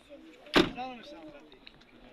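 Car door of a green Opel Astra G slammed shut: one sharp bang about half a second in.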